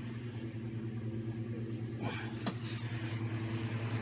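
Steady low hum of several even tones, with a brief soft sound about halfway through.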